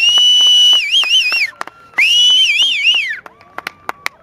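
Two long, loud, high whistles about a second apart. Each glides up at the start, holds, then wavers up and down before dropping away.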